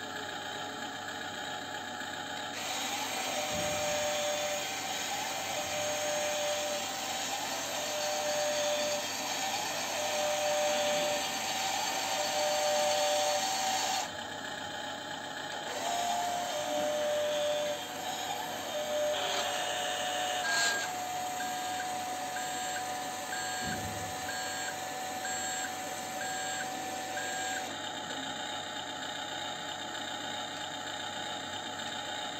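Amewi Arocs 1/16 RC dump truck's tipper drive whirring for about eleven seconds as the bed rises, then, after a brief pause, whirring again for about twelve seconds as the bed lowers. Short beeps repeat through both runs.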